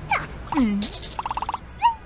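Cartoon sound effects and wordless character voices of animated larvae: short sliding calls and a falling swoop, then a quick rattle of about ten clicks and a short rising chirp near the end.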